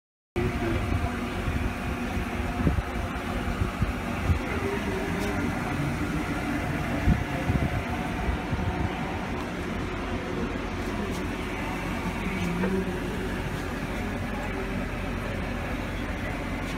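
Steady mechanical hum of fans and equipment running inside a mobile command vehicle, cutting in abruptly just after the start, with a few light knocks and faint voices in the background.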